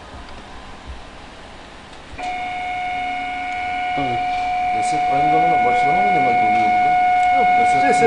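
A wood CNC router's motor starts about two seconds in and runs on with a steady high-pitched whine. People talk over it from about halfway.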